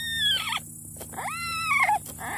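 Two high, squealing foal-like calls about a second apart, each rising and then sliding down in pitch.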